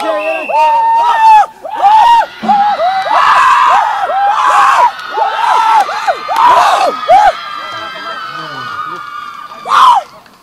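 Group of young men cheering a win with rhythmic chanted shouts, about two a second, which stop about seven seconds in; softer voices follow, then one loud shout near the end.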